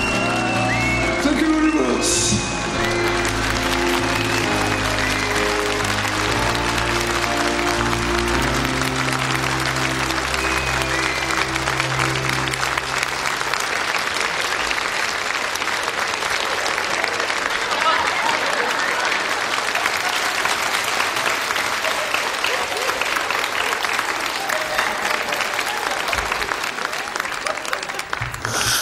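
Studio audience applauding as a pop ballad ends: the song's last held chords, with a few sung notes at the start, ring under the clapping and stop about halfway through, and the applause goes on alone.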